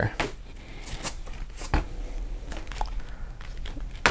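Coloring-book packs with attached plastic-wrapped markers being handled and laid down on a table: scattered light knocks and rustles of paper and packaging.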